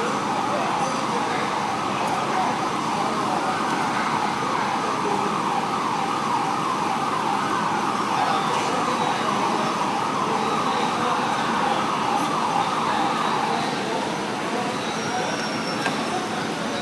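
Emergency vehicle siren sounding in a fast, rapidly repeating warble, fading out about three-quarters of the way through, over steady traffic and engine noise.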